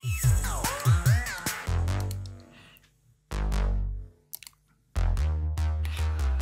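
Synth bass line of an electronic track playing back, deep low notes with gliding pitch in the first second or so, then held notes broken by two short gaps of silence.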